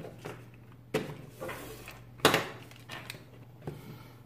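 Handling noises from unboxing a smartphone on a wooden table: two sharp taps of small plastic items being set down, about a second and about two and a quarter seconds in, with a soft rustle between them and lighter ticks after. A faint steady low hum runs underneath.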